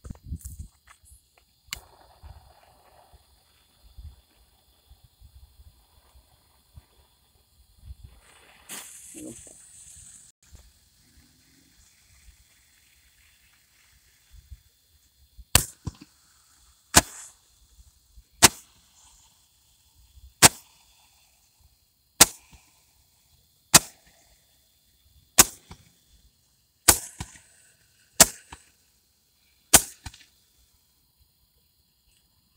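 Repeating aerial fireworks firing a string of about ten sharp bangs, roughly one every second and a half, starting about halfway through. Before them, a brief hiss about nine seconds in.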